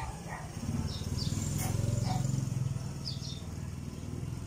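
Short high animal chirps, repeated several times, over a steady low rumble that swells in the middle.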